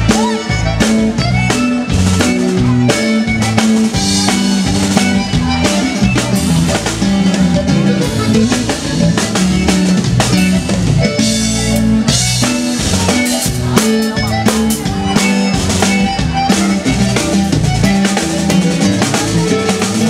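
A live band playing an instrumental passage: a drum kit beat with bass and keyboard, and a twelve-string bajo sexto being strummed.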